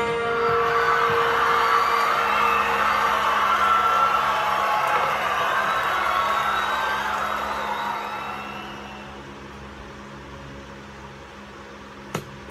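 The tail end of a recorded song fading out over about eight seconds, leaving only a low steady hum.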